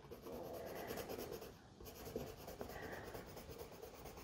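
A Prismacolor Premier colored pencil scribbling a swatch onto sketchbook paper: a faint, soft scratching in two spells, with a short break about a second and a half in.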